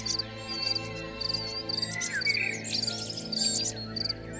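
Birds chirping, with short whistles and quick repeated high trills, over a soft held low chord of background music.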